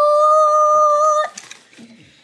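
A person's voice holding one long drawn-out note on a word, for about a second and a half, then breaking off.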